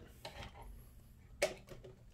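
A power adapter's plug being pushed into a wall outlet: faint handling ticks, then a single sharp click about one and a half seconds in.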